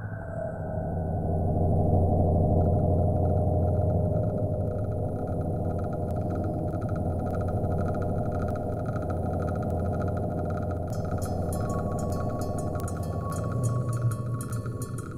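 Deep electronic sci-fi drone: a steady low rumble with held tones under it. A fast, high ticking rhythm and a new held tone join about eleven seconds in.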